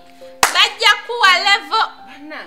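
Background music with long held keyboard notes. About half a second in comes a single sharp hand clap, followed at once by a woman's high-pitched exclaiming voice.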